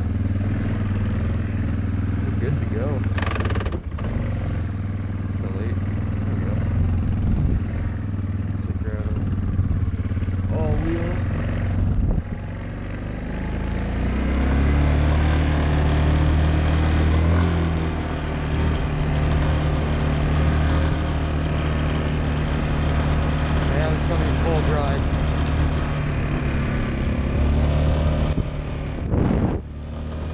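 Yamaha Kodiak ATV's single-cylinder engine running steadily while riding. About 13 seconds in it speeds up with a rising pitch, then holds steady at the higher speed.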